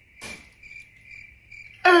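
Crickets chirping: a faint, steady high trill with evenly pulsing chirps, heard once the music stops. A loud laugh breaks in near the end.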